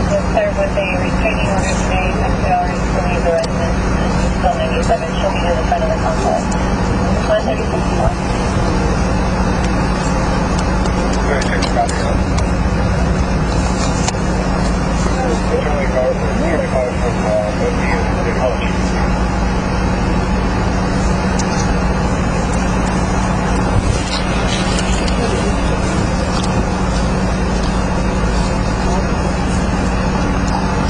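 Steady, loud noisy background with a constant low hum, and faint, unintelligible voices in the first several seconds and again briefly around the middle.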